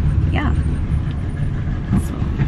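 Steady low rumble of a car riding along, heard from the back seat inside the cabin.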